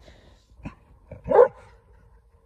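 A dog barking: a short, fainter sound just over half a second in, then one loud bark about a second and a half in.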